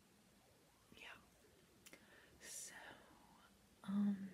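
Soft whispered speech from a girl: a few quiet, breathy phrases, with a faint click just before the middle.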